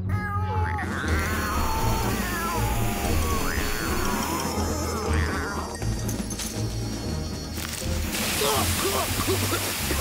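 Several cartoon cats meowing in short rising and falling cries over background music, then, about eight seconds in, the steady hiss of a hose spraying water.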